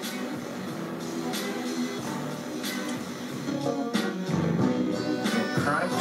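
Music with guitar playing through a DiGiCo console channel, with the Mustard Tubes tube emulation set to high distortion, giving the track a slight distortion.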